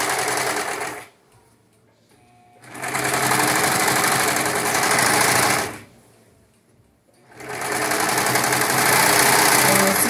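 Brother overlock serger running as it serges the cut edge of a cotton onesie. It runs in three bursts, stopping twice for about a second and a half each.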